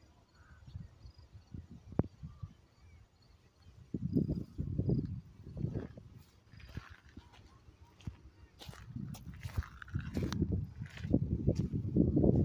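Wind buffeting a phone's microphone in irregular low rumbles that grow louder near the end, with scattered clicks and knocks from the phone being handled.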